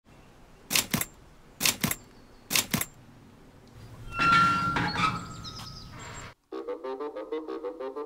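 Three sharp double knocks about a second apart, then an iron gate creaking open with a rising rush of sound that stops abruptly, as intro sound effects. About six and a half seconds in, light music starts with a quick, even pattern of repeated notes.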